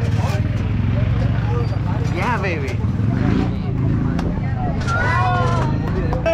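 An engine running steadily at a low pitch, under the voices of people gathered close by. One voice gives a rising-and-falling call about two seconds in.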